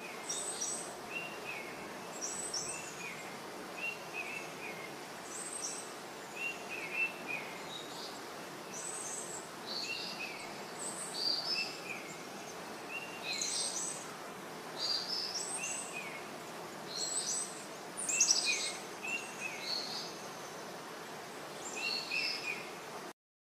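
Small birds chirping: short, high calls repeated about once or twice a second, some in quick pairs, over a steady outdoor background hiss.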